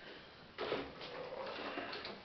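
Handling noise as a person settles onto a wooden chair with an acoustic guitar: a shuffling, rustling noise starting about half a second in, with no notes played.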